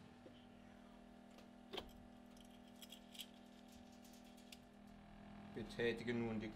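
A few light clicks and taps from a metal flue gas probe being handled and pushed into a flue pipe, the loudest a little under two seconds in, over a faint steady hum.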